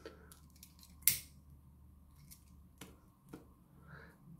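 A few short, sharp clicks of small objects being handled on a work bench, the loudest about a second in, over a faint low hum.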